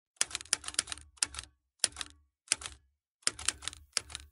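Typewriter keys clacking in short runs of rapid keystrokes, each run separated by a brief silent pause. It is a typing sound effect that comes as on-screen text appears.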